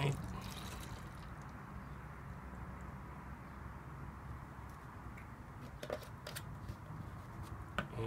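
Distilled water poured from a plastic water bottle into a cut-down plastic bottle cup, a steady trickle. There are a few light clicks near the end.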